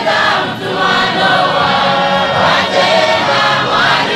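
A large congregation of men and women singing a hymn together in many voices, holding long notes that glide from one pitch to the next.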